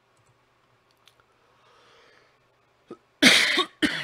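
A man coughs loudly once, about three seconds in, with a short second burst just before the end. Before that there is only quiet room tone with a faint click.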